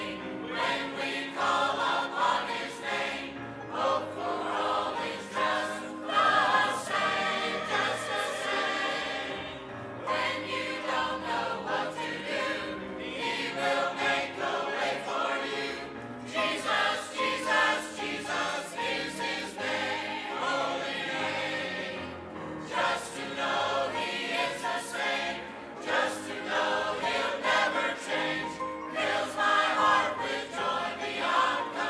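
Many voices singing a hymn together in church, in sung phrases with short breaks every few seconds.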